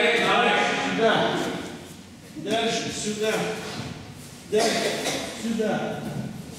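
Speech: a voice talking in a large hall, in phrases with short pauses.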